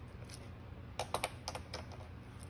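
Pen writing on paper: a quick cluster of short scratchy, tapping strokes about a second in, as a fraction bar and a numeral are written.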